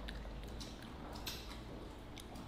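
Faint chewing and mouth sounds of a child eating stir-fried dried cabbage and pork belly, with a few soft scattered clicks.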